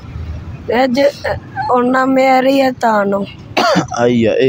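Speech only: a voice talking in short phrases, with one vowel drawn out and held for about a second in the middle.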